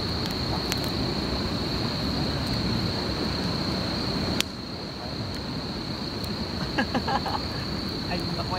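Crickets trilling at one steady high pitch at night, over a steady rushing background noise, with a sharp click about four seconds in.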